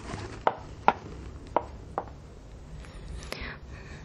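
Footsteps on a hard floor: four sharp steps about half a second apart in the first two seconds, then a softer shuffle.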